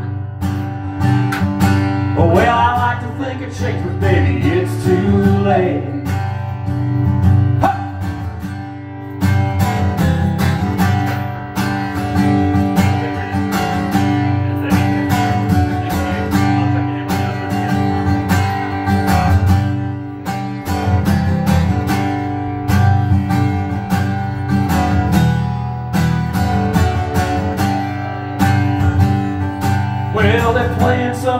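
Guitar strummed steadily through an instrumental break in a live country-style song. A held, wavering sung note trails off in the first few seconds.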